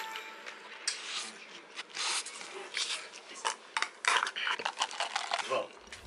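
Close, irregular clicks and crackles of eating and handling takeout food and its plastic containers.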